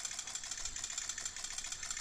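Smartphone camera shutter sound firing in rapid burst: a fast, unbroken string of shutter clicks.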